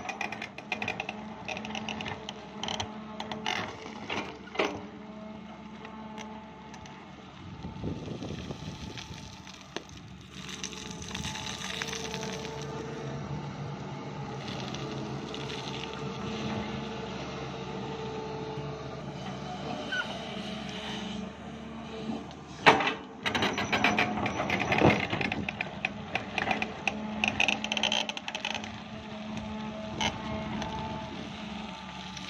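Sany crawler excavator working: diesel engine and hydraulics running steadily with a humming whine that shifts with load as the bucket digs stony soil. Stones clatter and scrape against the bucket now and then, loudest a little past two-thirds of the way through.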